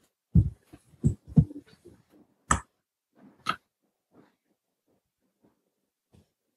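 A few short low thumps in the first second and a half, then two sharp clicks about two and a half and three and a half seconds in, with quiet between.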